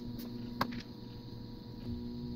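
One sharp small click about half a second in, with a fainter one just before, from a steel paperclip wire being worked into a plastic servo arm. A steady low electrical hum runs underneath.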